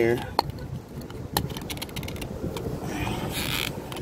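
Plastic clicks of a Fix-a-Flat aerosol can's cap and hose being worked loose by hand: a few sharp clicks in the first second and a half, then a rustle of handling near the end, over a low rumble of wind on the microphone.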